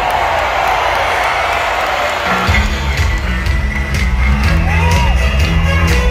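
Large concert crowd cheering and whooping. About two and a half seconds in, the bass line and drum beat of a disco song come in under the cheering.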